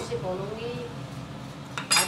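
Steel kitchen utensil clinking once against stainless-steel cookware near the end, after a lighter clink at the start.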